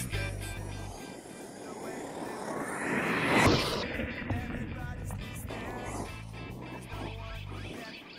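A brushless-electric RC monster truck passes close by on a dirt track. Its noise swells to a sharp peak about three and a half seconds in, then fades, over background music.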